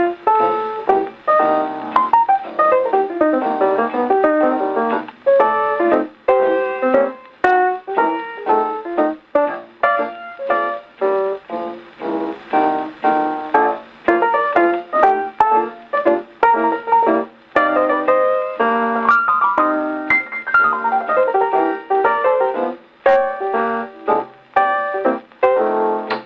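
Victrola console phonograph playing a 78 rpm shellac record: a jazz piano intro with busy chords and runs, including two sweeping downward runs, one about two seconds in and one about twenty seconds in.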